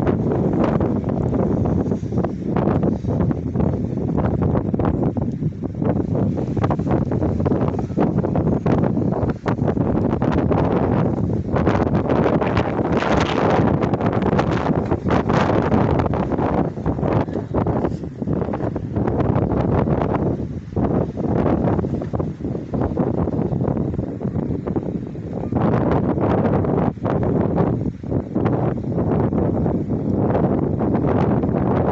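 Wind buffeting the phone's microphone in irregular gusts, a loud rumbling rush with no pauses.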